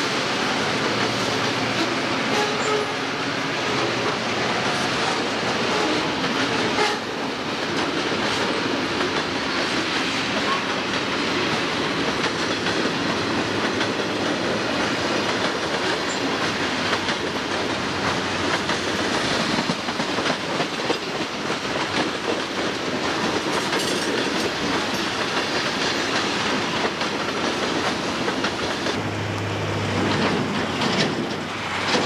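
A diesel freight train passing close by: the locomotives rumble past, then a long line of freight cars rolls by with a steady, loud rolling noise of wheels on rail.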